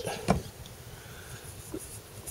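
Low steady background noise in a pause between speech, with a short vocal sound just after the start.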